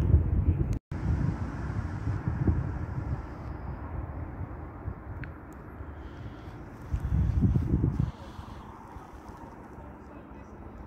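Low rumble of wind and handling noise on a handheld camera's microphone, with no distinct events. It cuts out for an instant just under a second in and swells with a gust about seven seconds in.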